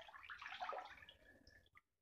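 A hand swishing through bath water, the water sound dying away near the end.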